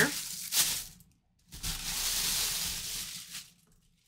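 Packaging being handled, heard as rustling and scraping: a short rustle with a sharp crinkle in the first second, then a steadier rustle of about two seconds.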